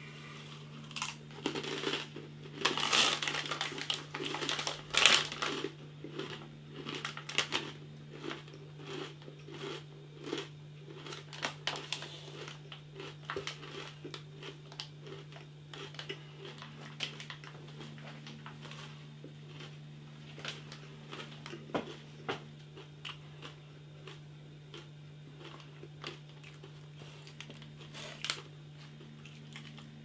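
Crunching and chewing of rolled Takis Fuego corn tortilla chips, loudest in the first few seconds and thinning to scattered softer chewing clicks.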